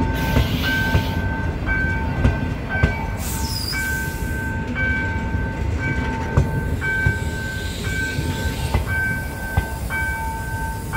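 A passenger train of coaches rolling past close by, a steady low rumble with short wheel clacks over the rail joints. Over it a level-crossing warning repeats a two-note tone that sounds and breaks off over and over.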